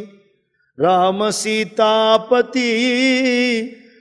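A man chanting a devotional verse in a sustained melodic line, beginning about a second in. Near the end he holds one long wavering note.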